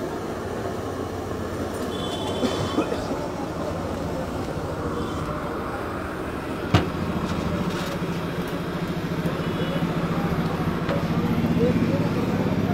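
Busy street food stall ambience: background voices over a steady low mechanical hum that grows a little louder toward the end, with a single sharp knock about seven seconds in.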